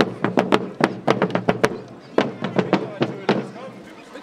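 Landsknecht marching drums beaten by a group of drummers in a march rhythm: sharp strokes several a second, with a brief gap about halfway through.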